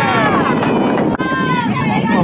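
Several high-pitched voices shouting and calling out during a softball play, with a single sharp click about a second in.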